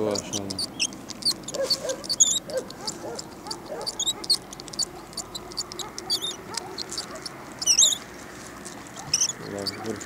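Small birds chirping and warbling, a run of short high calls with a few longer wavering song phrases about two seconds in and again near the end.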